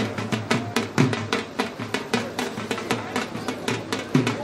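Drum beaten in a fast, steady rhythm, about five or six sharp strokes a second.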